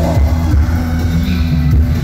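Loud live rock band playing an instrumental passage through the concert PA: electric guitar and heavy bass over a steady beat.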